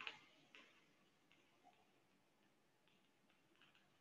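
Near silence broken by faint, irregular clicks: a sharper click at the start, another about half a second in, then several fainter ticks spread unevenly through the rest.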